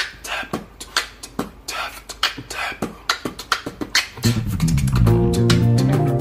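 Beatboxing: quick mouth-percussion beats and snares in a steady groove. About four seconds in, a guitar comes in playing under the beat, with loud low notes.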